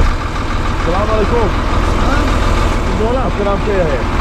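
Heavy dump truck's diesel engine idling, a steady low rumble, with men's voices talking over it about one second in and again near the end.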